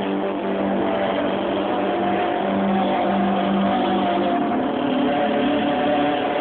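Live singing over sustained musical accompaniment, loud and heard through a phone's microphone: long held notes, with the chord changing about four seconds in.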